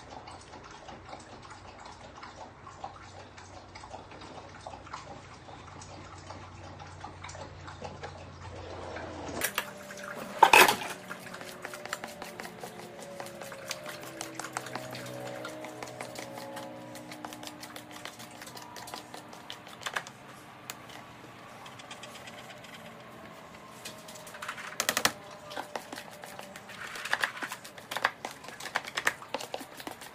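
Scraping and scattered tapping of a utensil against a clear plastic mixing bowl as the last of the cake batter is scraped out, with one sharp knock about ten seconds in.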